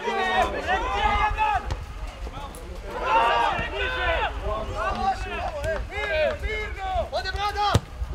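Men's voices shouting and calling out on an outdoor football pitch, loudest about three seconds in, over a steady low rumble.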